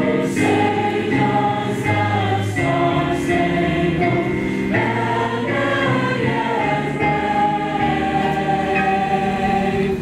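A choir singing slowly in long held notes, ending on a note held for about three seconds.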